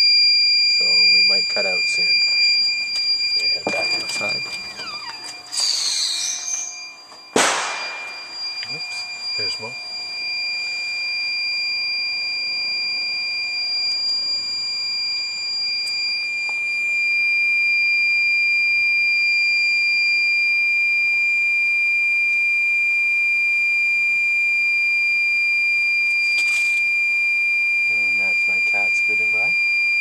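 Iliminator 1750 W inverter's low-battery alarm screaming as one continuous high-pitched tone. It is warning that it is about to shut down as the battery bank sags to 10.6 volts under the heater's load. A single sharp bang sounds about seven seconds in.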